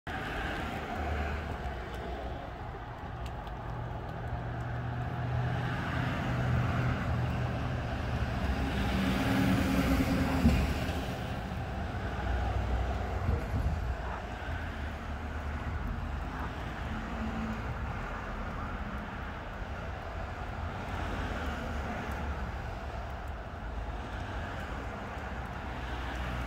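A steady low background rumble that swells for a couple of seconds about ten seconds in.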